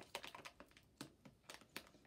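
Faint, scattered light clicks of small plastic toy figurines being handled, about half a dozen in two seconds.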